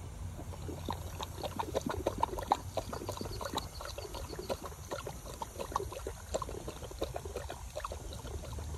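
A Weimaraner drinking from a running drinking fountain: quick wet laps and gulps at the stream over the steady splash of water into the steel basin.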